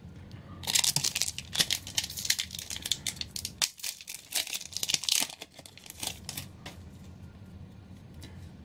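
Foil booster pack wrapper being torn open by hand and crinkling, a dense run of crackling rustles that starts about half a second in and dies away after about six seconds.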